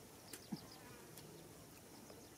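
Very quiet open-air ambience with a faint insect buzz, and a soft knock about half a second in as a wooden stick prods the dry, cracked ditch bed.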